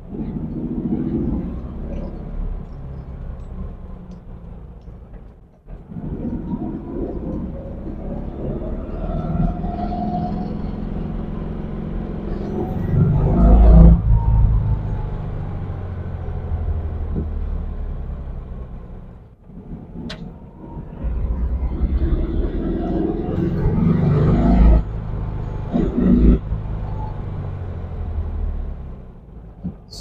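A 1967 Volkswagen Beetle's air-cooled flat-four engine heard from inside the cabin while driving, its pitch climbing as the car accelerates. The sound drops away briefly twice, about five seconds in and again near twenty seconds, then builds up again, loudest around the middle.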